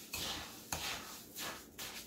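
A spoon stirring orange zest into wet coarse sea salt in a ceramic bowl: soft gritty scraping strokes, about one every half second.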